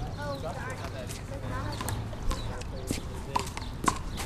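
A rubber handball bouncing on the concrete court, a handful of sharp, irregularly spaced knocks, with voices talking in the background.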